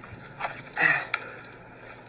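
A few faint, short crunching and crackling sounds as a brittle, dried animal carcass is bitten into, with one sharp click just after a second in.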